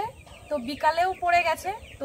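A woman talking in a high voice, in short phrases with pauses, Bengali-style village narration.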